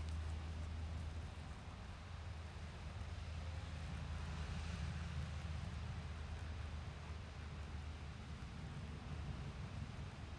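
Wind buffeting the phone's microphone: a steady low rumble with a soft hiss over it.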